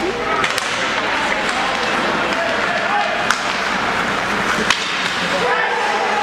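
Ice hockey game heard from the stands of a rink: a steady bed of crowd chatter and skating on the ice, broken by a few sharp clacks of sticks and puck, the loudest about three and nearly five seconds in.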